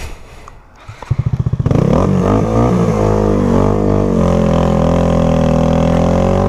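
Honda Grom's small single-cylinder engine pulsing at low revs about a second in, then revving up as the motorcycle pulls away and settling into a steady cruising note.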